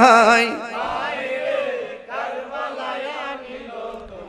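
A man chanting a melodic devotional verse into a microphone, his pitch wavering and ornamented. The loud line breaks off about half a second in, and softer chanting carries on until near the end.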